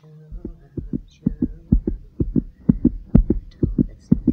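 A steady beat of low thumps, mostly in pairs, about two pairs a second, over a low steady hum. The thumps start about a third of a second in.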